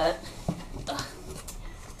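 Handling sounds from a cardboard shipping box: a knock about half a second in, then faint rustling and taps as something squashed inside is worked loose and pulled out.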